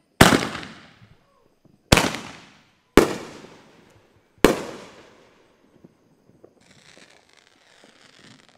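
Four loud fireworks explosions: the first comes a fraction of a second in, then about 1.7 s, 1 s and 1.5 s apart, each echoing and dying away over about half a second. A fainter steady hiss follows near the end.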